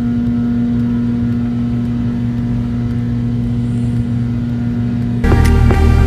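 Steady drone of an airliner cabin in flight: engine and air noise with a constant low hum. About five seconds in, background music cuts in over it.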